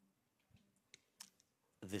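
Four or five faint, short clicks spread over about a second, followed near the end by a man starting to speak.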